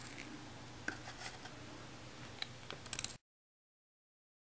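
Faint small clicks and scrapes of a plastic spoon against a plastic bottle cap as leftover epoxy resin is scraped out into a cup, coming a little faster near the end. A little after three seconds in, the sound cuts off to dead silence.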